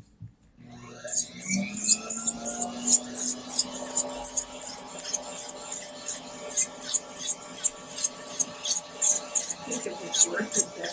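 Podiatry rotary handpiece with a Moore's sanding disc spinning up with a rising whine, then running steadily while the disc sands callus off the sole of the foot in quick strokes, about four a second, each a bright rasping hiss.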